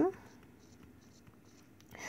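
Faint scratching and ticking of a stylus writing numbers on a tablet's glass touchscreen.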